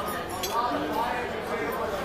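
Background chatter in a busy restaurant, with a single metal spoon clink against a ceramic soup bowl about half a second in.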